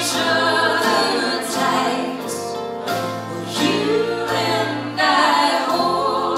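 Live folk band music with several voices singing together over guitars and mandolin.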